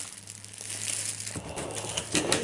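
Packaging crinkling and rustling as it is handled and pulled out of a box, quiet at first and growing louder from about halfway through.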